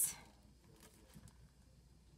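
Faint light taps and rustles of a plastic-sleeved craft transfer sheet being handled and held up, a few soft ticks spread through an otherwise quiet stretch.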